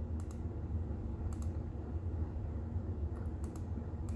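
A few light, irregular clicks from typing a command on a Raspberry Pi's 7-inch touchscreen on-screen keyboard, over a steady low hum.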